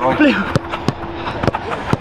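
A football being passed and struck in quick succession: several sharp ball strikes over two seconds, with a man's voice briefly at the start.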